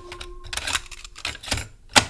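A few irregular sharp clicks and knocks, the loudest one near the end, over a faint held note dying away.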